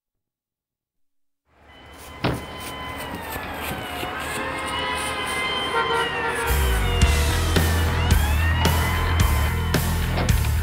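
Sirens wailing up and down over street traffic fade in, with a sudden hit about two seconds in. About six and a half seconds in, a heavy low drum-and-bass pulse of a rock song's intro comes in, with a beat about twice a second.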